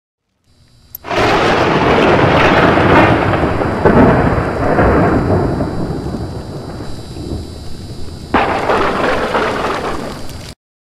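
Thunder sound effect: a loud crack about a second in that rolls on and slowly fades, with a second crack near the end.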